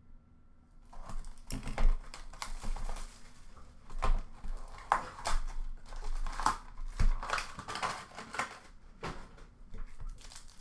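Cardboard trading-card hobby box being handled and opened and foil card packs lifted out of it: a quick run of small clicks, taps and rustles, starting about a second in.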